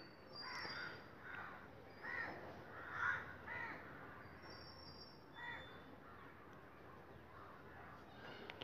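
Faint crows cawing: about six short harsh calls spread over the first six seconds, with a few thin high tones between them.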